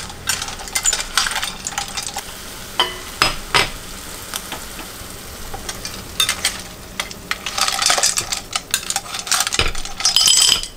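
Field snails sizzling in a stainless steel pot over a turned-up gas flame while a metal ladle stirs them, scraping the pot and clinking among the shells. The stirring is busiest near the end.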